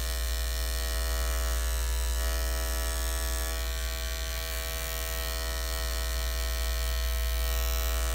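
Andis five-speed electric dog clipper with a size 40 blade running with a steady, even buzz while trimming the hair from between a dog's paw pads.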